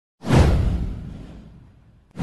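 A whoosh sound effect with a deep low boom under it. It starts suddenly a fraction of a second in, sweeps downward and fades away over about a second and a half.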